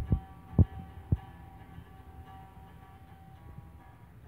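Three dull, low thumps in the first second or so, knocks against the body of a hollow-body guitar, over faint sustained background music.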